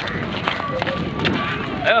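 Footsteps of several people running and shuffling on a paved road, with voices in the background.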